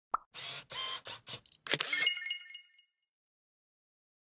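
Logo-sting sound effect: a short blip, then a quick run of four brief swishing bursts, then a sharp hit with a bright ringing tone that fades out within about a second.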